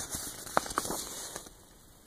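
Paper owner's manual being handled: a soft rustle with two or three small clicks, dying away over the second half.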